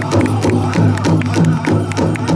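Hoop dance song: a drum struck in a steady beat of about four strokes a second, with voices singing over it.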